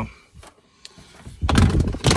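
A plastic storage tote's lid being handled, giving a dull, low scraping thud about one and a half seconds in, after a quiet first second.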